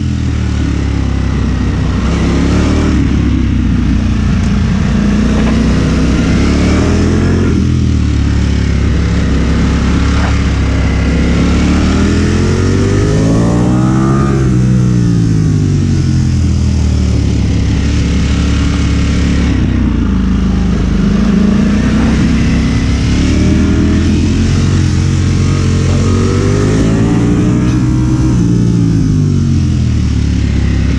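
Ducati Streetfighter V4's V4 engine, held in first gear, revving up and down over and over as the motorcycle accelerates out of tight corners and eases off into the next ones.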